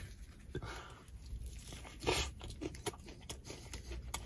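Biting into a fried chicken sandwich, the battered chicken crunching, then quiet chewing with the mouth closed, with scattered faint crackles and clicks.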